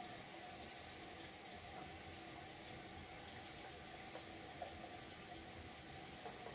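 Bathroom sink tap running steadily and faintly.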